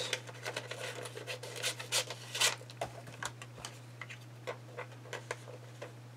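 Glossy magazine paper rustling and crinkling as it is handled, with irregular light clicks and taps from a plastic handheld paper punch, a few louder ones about two seconds in. A faint steady low hum runs underneath.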